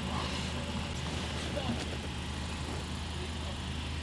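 A car engine idling steadily, a low, even hum with no change.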